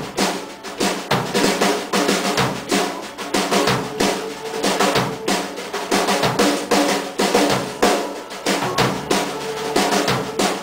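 Drum kit played through a rock beat, with snare and bass drum hits coming several times a second and cymbals ringing over them. A guitar plays along underneath the drums.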